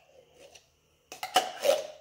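A metal spoon scraping and clinking inside an opened tin can as canned pumpkin is scooped out into a stainless steel mixing bowl. A few sharp clinks and scrapes start about a second in.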